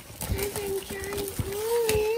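A child's voice holding a long, steady note, over the crinkling and clicking of plastic shrink wrap being pulled off a trading-card box.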